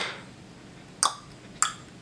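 Three sharp tongue clicks, of the kind used for human echolocation: one right at the start, one about a second in and one about half a second later.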